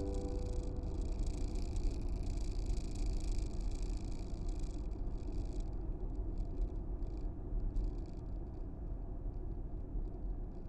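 Steady road and engine rumble inside a car driving along a motorway, with tyre hiss over it that eases off about six seconds in.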